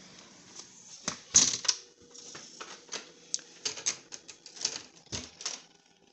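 Footsteps walking indoors: an irregular run of knocks and clicks, several a second, loudest about one and a half seconds in.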